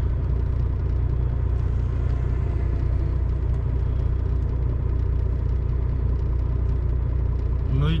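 Truck's diesel engine idling steadily, a low even rumble heard inside the cab.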